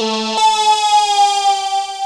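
Cherry Audio Memorymode software synthesizer, an emulation of the Memorymoog analog polysynth, playing a preset from its Basses soundbank. A held note gives way about half a second in to a new, bright, buzzy note that slides slowly down in pitch and fades away.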